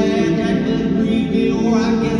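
A man singing to his own acoustic guitar in a live performance: a sung line without clear words between verses, over strummed guitar chords.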